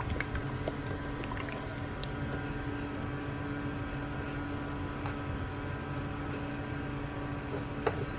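A steady low hum with a few faint clicks and taps as a plastic bottle of shea butter is handled.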